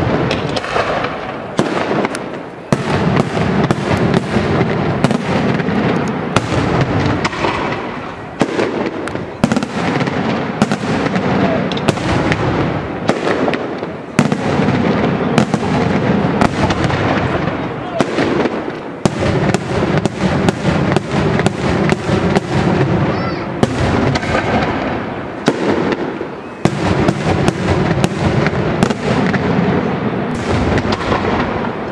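Daytime aerial fireworks: shells bursting overhead in rapid succession, several sharp bangs a second with rumbling echo between them, broken by a few short lulls.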